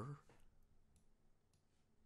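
Near silence with a few faint, short clicks of a computer mouse, after a last spoken word trails off at the very start.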